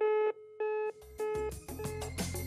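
Telephone busy or disconnect tone after a call is hung up: four short beeps, one steady tone each, about 0.6 s apart. Music comes in underneath about a second in.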